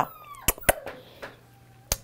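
An Australian labradoodle puppy gives a short high-pitched whimper that falls in pitch, then a fainter thin whine. Three sharp clicks come between them.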